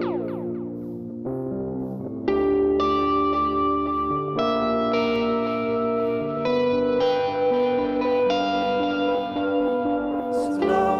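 Live indie rock band playing an instrumental passage: an electric guitar through echo effects plays held chords that change every second or two over a bass line. A falling swoop of pitch comes at the very start, and the music dips quieter about a second in before coming back in full.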